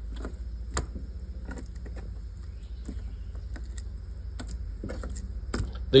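Scattered light taps and clicks of whole salted fish being turned over by hand on a plastic cleaning board, at uneven intervals, over a steady low hum.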